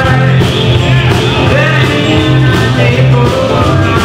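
Live blues-rock band playing, with electric guitar and bass guitar over a steady beat. A man sings into the microphone.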